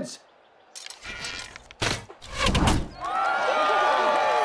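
Arrows thudding into archery targets, a few impacts between about one and three seconds in, followed by a crowd of spectators cheering and shouting.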